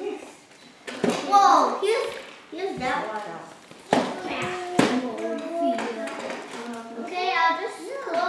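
Young children's voices babbling and calling out, too unclear for words, with a few short sharp noises about a second in and again around four and five seconds in.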